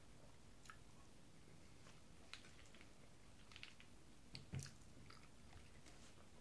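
Faint close-up chewing of a mouthful of food, with a few soft wet clicks; the loudest comes a little past four seconds in, with a low thump under it.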